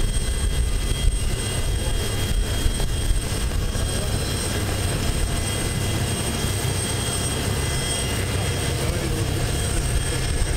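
Jet aircraft turbine running on the ground, a steady rumble with high, steady whining tones over it.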